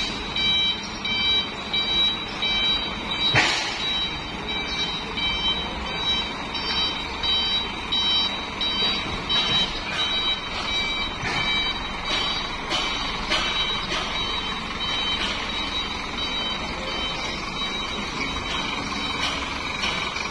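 A vehicle's reversing alarm beeping in a steady repeated pattern, fading out about two-thirds of the way through, over continuous low background noise.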